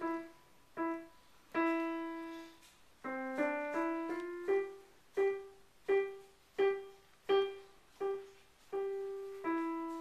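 Piano played slowly, a melody of single struck notes that ring and fade, with one note held about two seconds in and a quicker run of notes a little after three seconds, then single notes at an even, unhurried pace.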